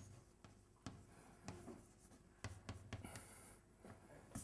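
Chalk writing on a blackboard, faint: a run of sharp taps and short scratches, with a longer high scratch a little after three seconds in.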